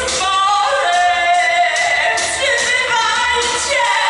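Music with singing voices: sustained, sliding sung lines over an accompaniment with regular high, hissy percussive strokes.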